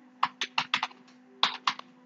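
Computer keyboard being typed on: about nine quick keystrokes in two short runs, the second beginning about a second and a half in.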